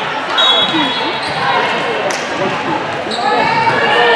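Many voices talking and calling out in an echoing indoor sports hall, with brief high squeaks of athletic shoes on the court floor and a sharp knock about two seconds in.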